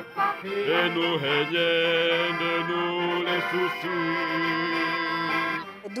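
A small folk choir singing a traditional alpine song in harmony, with accordion accompaniment. After a few shifting notes they hold long chords, breaking off shortly before the end.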